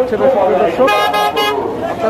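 A truck horn honking in three short toots about a second in, over men's voices.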